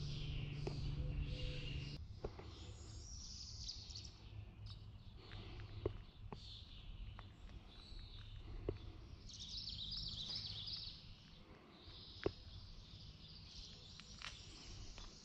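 Wild birds chirping and singing in the surrounding trees over a low, steady outdoor rumble, with a few brief sharp clicks.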